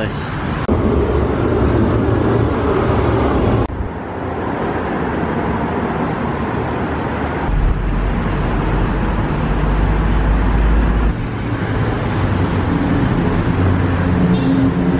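Steady, loud road traffic noise from a busy road. A deeper low rumble swells for a few seconds in the middle. The sound shifts abruptly twice in the first four seconds.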